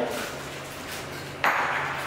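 Metal cooker head of a cotton candy machine knocking as it is handled: a ringing ping at the start, then a sharper knock about one and a half seconds in as it is set down on the table.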